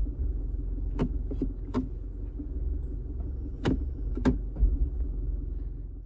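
Toyota 1GD-FTV 2.8-litre four-cylinder turbodiesel idling, heard inside the cabin, with several sharp clicks from the automatic gear selector being moved and a low thump about two-thirds of the way through. The thump is the harsh jerk of the automatic transmission engaging drive, a fault the owner expects the transmission software update to fix.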